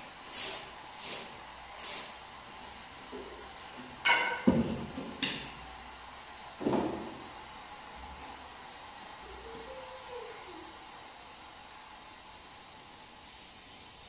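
Thin flatbread being worked on a domed metal griddle: a few soft swishes early on, then a cluster of sharp knocks and thuds about four to seven seconds in as the bread and its stick are handled. A faint steady hiss follows.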